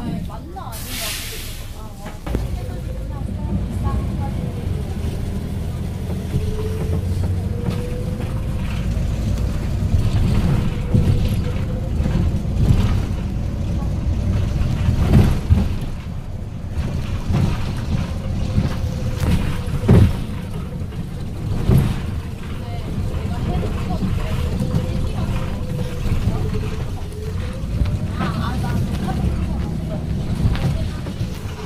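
Inside a moving city bus: steady engine and road rumble, with a faint whine that rises in pitch early on as the bus gathers speed and sinks again near the end as it slows. A short hiss of air comes about a second in, and a few sharp knocks and rattles sound through the second half, the loudest about two-thirds of the way through.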